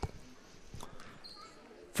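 Faint high-school gymnasium background picked up through the broadcast microphone during a dead ball before free throws, with a sharp tick at the very start and a fainter one a little under a second in.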